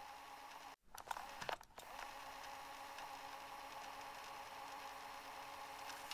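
Faint room tone with a steady low hum, broken by a brief dropout and a few soft clicks between one and two seconds in.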